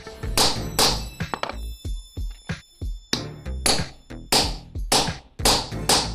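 Mallet striking a steel stitching chisel to punch stitching holes through cowhide leather: a string of sharp, irregular knocks, with background music throughout.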